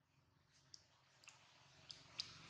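Near silence: faint outdoor background with three faint, short clicks spread across the two seconds.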